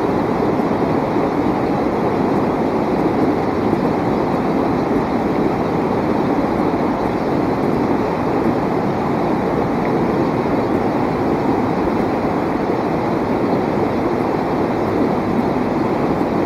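Shallow rocky stream rushing over boulders in small rapids: a steady, loud rushing of water.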